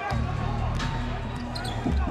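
Arena music with steady low bass notes playing over the game, while a basketball is dribbled up the hardwood court.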